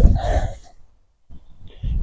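A man's breath out trailing off the end of a spoken word, a moment of dead silence about a second in, then a faint short breath in just before he speaks again.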